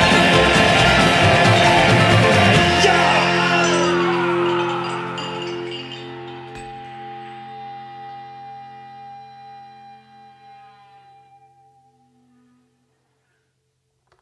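A honky-tonk band with acoustic guitar and upright bass plays the song's final bars. The playing stops about three seconds in, and the last held chord rings on and fades slowly to silence before the end.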